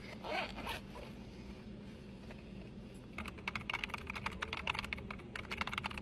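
A zipper on a bag being run open in the first second, then fast typing on a computer keyboard, a rapid stream of key clicks, from about halfway in.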